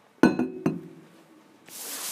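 Two sharp clinking knocks about half a second apart, the first the louder, each ringing briefly, as of a hard object knocked against a hard surface. A brief soft hiss follows near the end.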